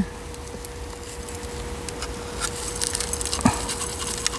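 Gritty potting soil pouring from a plastic scoop into a pot around a succulent's roots: a patchy, scratchy trickle of grains that builds from about halfway through, over a steady faint hum.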